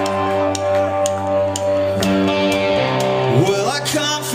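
Live rock band playing: electric guitar chords ringing out over sharp drum hits about twice a second, with a note sliding upward in pitch near the end.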